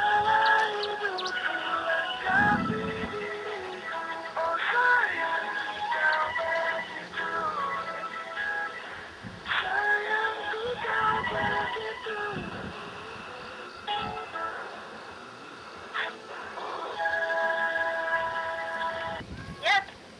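A song with singing played through a mobile phone's loudspeaker while an outgoing call rings: a ringback-tone song heard in place of the usual ringing, with a held chord near the end.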